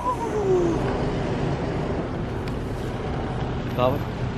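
Steady outdoor background noise, a low rumble and hiss like distant traffic. A voice trails off in a long falling tone at the start, and a brief voice sound comes just before the end.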